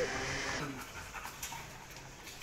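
A Belgian Malinois panting while it is held and handled on the leash.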